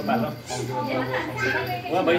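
Several people talking at once, children's voices among them.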